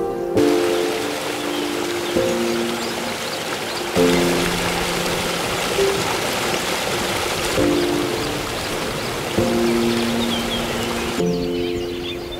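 A stream rushing over rocks, a steady hiss of flowing water that starts about half a second in and stops shortly before the end, under background music of slow held notes.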